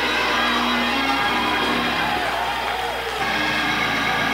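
Organ holding sustained chords, with faint voices from the congregation calling out, heard on an old tape recording with a low steady hum.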